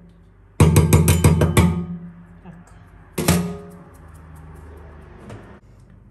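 Metal sink strainer basket clattering against a stainless steel sink. A quick run of ringing rattles comes about half a second in and lasts about a second, then a single loud clank near the middle as the strainer is set down in the basin.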